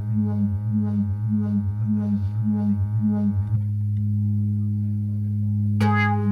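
Live prog-rock keyboard passage: a sustained low synthesizer drone with a steadily pulsing pattern above it. The pulsing stops about halfway through, leaving a held low drone, and quick keyboard notes break in near the end.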